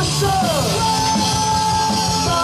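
Live punk rock band playing loud: electric guitars, bass and drums. A pitch slides down just under a second in, then one long note is held.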